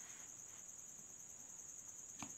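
Near silence, with a faint, steady, high-pitched pulsing trill that goes on without a break.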